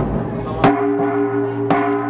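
Hand-held bossed gongs struck with padded mallets: four strikes less than a second apart, the third lighter, each ringing on in steady low tones under the next.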